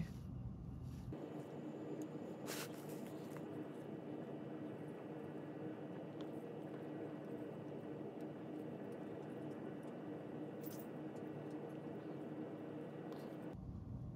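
Faint, steady room tone with a low hum, broken by a soft click or two.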